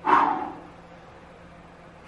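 One short, breathy vocal burst from a woman, about half a second long right at the start, trailing off. It is followed by low room noise.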